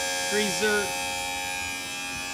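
Electric-hydraulic pump of a dump trailer's telescopic hoist running with a steady hum as the cylinder extends in its first, slowest stage.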